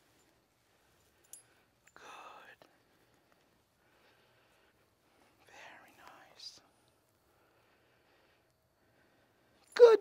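Faint, hushed speech in two short snatches, about two and six seconds in, with near silence around them; loud speech begins right at the end.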